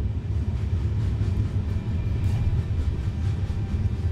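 Steady low rumble of a moving freight train, heard from on board an open wagon.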